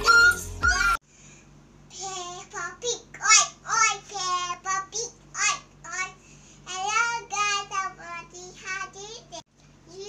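Intro music that cuts off abruptly about a second in, then a young girl's high voice in lively, pitch-bending phrases.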